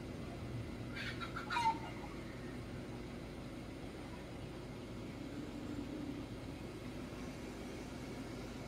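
A brief bird call, falling in pitch, about a second in, over a steady low background hum.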